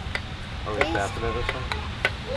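Speech only: a couple of brief spoken words over a steady low background noise.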